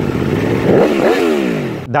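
Aprilia motorcycle engine revving, its pitch rising and then falling away. It stops abruptly near the end.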